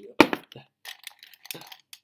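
Pens and pencils clinking and rattling against each other and their pen pot as they are sorted through. There is a sharp clack just after the start, the loudest, then a run of lighter clicks.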